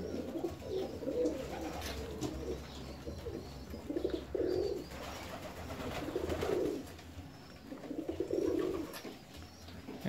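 Domestic fancy pigeons cooing: a series of soft, low coos, the clearest spread from about four to nine seconds in.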